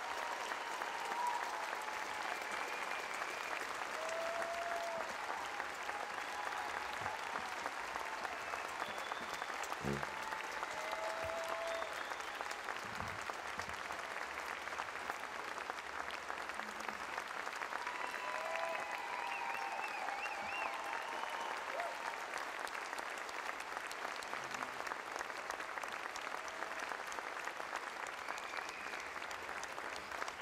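A large concert audience applauding steadily, with a few scattered whoops rising above the clapping.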